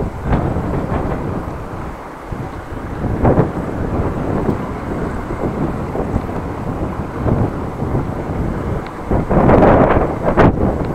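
Wind buffeting the microphone of a camera carried on a moving bicycle: a loud, uneven low rumble that swells stronger shortly before the end.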